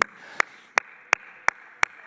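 One person clapping hands in a steady beat, about three sharp single claps a second.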